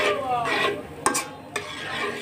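Flat metal spatula stirring and scraping a wet onion-tomato spice paste around a metal karai over a light sizzle, with two sharp knocks of the spatula against the pan about halfway through.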